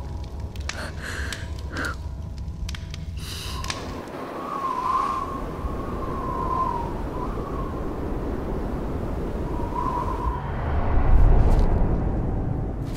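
Snowstorm wind blowing with a low rumble, joined after a few seconds by a wavering, whistling howl; a gust swells loudest near the end. A few sharp ticks come at first.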